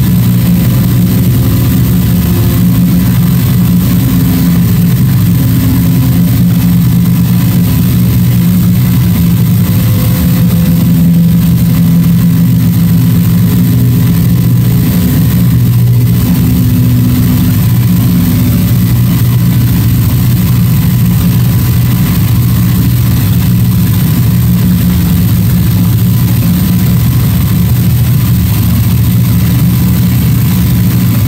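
Electroacoustic improvised music: a loud, steady low drone with faint higher tones drifting in and out over the first two-thirds, a thin steady high tone and a layer of hiss above.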